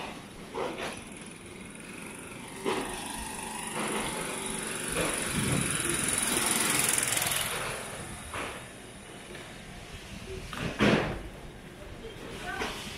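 Street ambience in a city alley: a rushing noise swells and fades in the middle, like a vehicle passing, with scattered short knocks and clatter, the loudest near the end.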